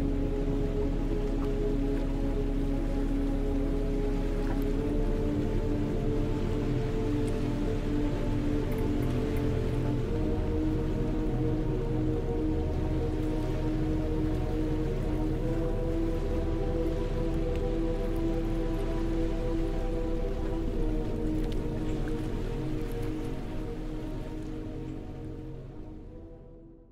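Slow ambient background music of sustained chords that change every few seconds, over a steady rain-like hiss, all fading out near the end.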